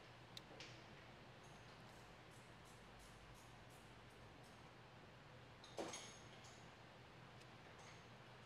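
Near silence, with a few faint clicks from a small plastic odometer assembly being turned in the fingers; the loudest click comes about six seconds in.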